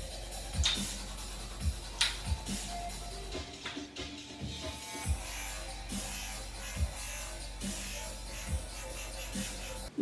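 Music with a steady low beat, about one beat a second.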